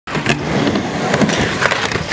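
Skateboard wheels rolling on a wooden ramp: a steady rumble, broken by several sharp clacks of the board.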